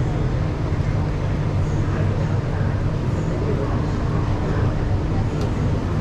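Steady low hum of a Singapore MRT train standing at an underground station platform with its doors open. Station ambience with indistinct voices is heard over it.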